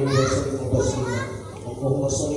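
Speech: a man's voice with children's high-pitched voices rising over it.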